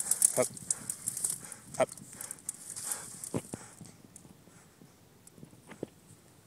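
English springer spaniel panting close to the microphone, with rapid rustling and clicks, for the first few seconds, then much quieter.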